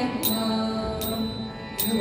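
Children singing a Kannada devotional song through microphones over an accompaniment with a regular beat. A long note is held in the first half, and the sound dips briefly just before the next line begins near the end.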